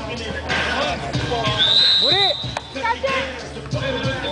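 Outdoor streetball game: a basketball bouncing on the asphalt court amid players' and spectators' voices. A long, steady high whistle sounds for about a second and a half midway.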